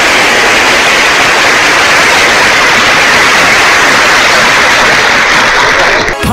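Loud, steady hiss-like noise, like static, with no tune or voices in it, cutting off suddenly at the end as music begins.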